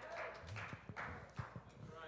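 A quiet pause holding faint, irregular soft taps and clicks, several to the second, with no steady sound under them.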